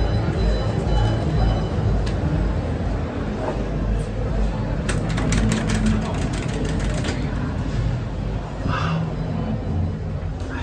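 A steady low rumble, with a quick run of clicks about five to seven seconds in as a button on a stainless-steel lift car operating panel is pressed.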